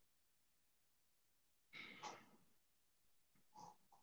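Near silence on a video call, with one faint breath into a participant's microphone about two seconds in and a couple of small soft sounds near the end.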